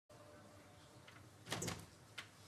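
Faint room tone, broken about one and a half seconds in by a brief clatter of a few knocks.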